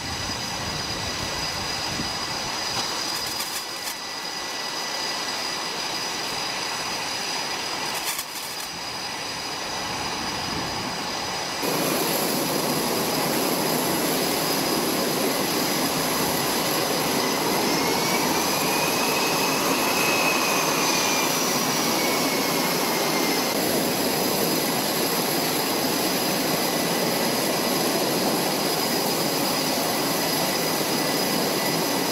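Jet aircraft engines running on a carrier flight deck: a loud, steady noise with a high whine, growing abruptly louder about twelve seconds in. Around twenty seconds in, a pitched whine rises and falls.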